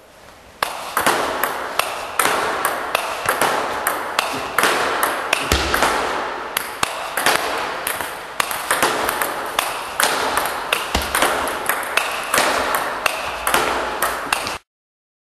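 Table tennis balls clicking in quick succession off the bat, the table and the rebound board, several sharp clicks a second, starting abruptly about half a second in.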